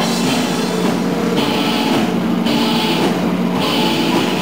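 Rock band playing live and loud: guitar and a drum kit, with the cymbal wash coming and going every second or so.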